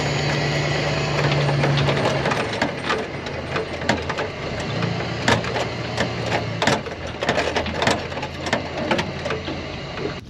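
Truck engine running as it tows a loaded seed tender across a rough tilled field. Its pitch drops about two seconds in and rises again a few seconds later. Sharp rattles and knocks from the rig bouncing over the ground come thicker from about three seconds in.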